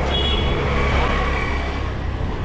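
Road traffic on a busy city street: a steady low rumble, with a thin, steady high tone held for over a second in the middle.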